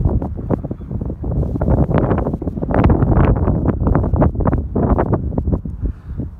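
Wind buffeting the camera's microphone in irregular gusts, a loud rumbling that peaks about three seconds in.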